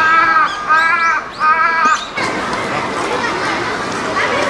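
A crow cawing three times in quick succession, each caw short and evenly pitched, followed by the murmur of visitors' voices.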